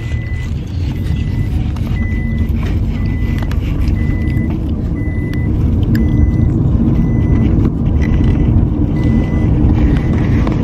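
Steady low rumble of a car heard from inside the cabin, with a short high electronic beep repeating about once a second.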